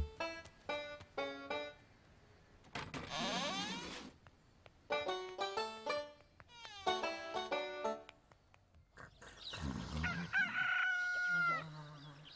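Cartoon underscore of short, detached notes in halting phrases, with a sliding flourish about three seconds in. Near the end a rooster crows, a long held call that bends down at its close, marking daybreak.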